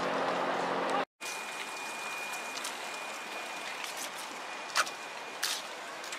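Water churning in an outdoor penguin pool with a low hum, cut off suddenly about a second in. After the cut comes a steady outdoor hiss with a faint high whine and a couple of short clicks near the end.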